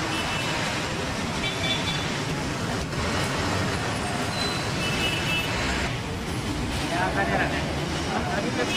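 Steady din of heavy city traffic from a busy road below: buses, jeepneys and motorcycles running, with people's voices mixed in.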